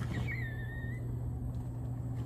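A woman's brief, high-pitched squeal of excitement, lasting under a second, over a steady low hum.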